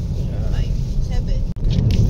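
Steady low rumble of a car interior, with plastic bag crinkling in a few short sharp bursts near the end.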